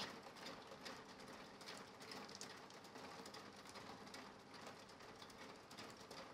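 Near silence with faint, scattered clicks of mahjong tiles being handled and set on the table.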